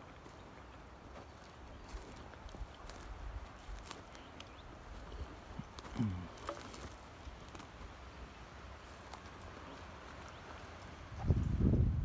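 Footsteps through dry grass and twigs, with wind rumbling on the microphone. A short low grunt falls in pitch about six seconds in, and a louder gust of wind hits the microphone near the end.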